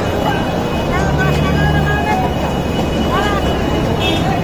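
Steady low engine rumble of a nearby motor vehicle, growing stronger for a second or so about a second in, with scattered background voices.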